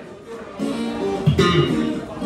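Live electric guitar and electric bass playing together. The chords come in about half a second in, with a loud accented hit from both near the middle.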